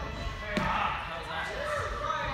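Indistinct voices of people in an indoor parkour gym, with one sharp thud about half a second in, likely a person landing on a padded box or mat.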